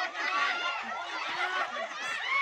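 A group of people laughing and calling out over one another, several excited voices at once.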